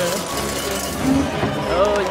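Cartoon soundtrack playing: background music with short bits of voice about a second in and again near the end.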